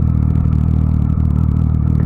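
Motorcycle engine running at a steady speed, with no rise or fall in pitch.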